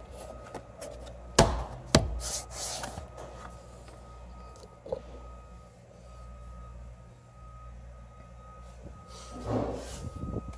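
Plastic door sill trim panel pressed into place: two sharp snaps of its clips about a second and a half in, half a second apart, followed by plastic scraping and rubbing as the panel is pushed down and handled.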